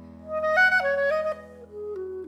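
Clarinet playing a quick phrase of notes that step up and down about half a second in, then a slower falling line near the end, over held low notes.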